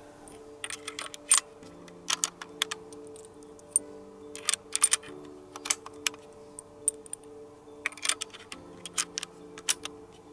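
Irregular sharp metallic clicks and taps from handling a rifle's magazine and pressing cartridges into it, several in quick clusters. Soft background music with held chords plays underneath.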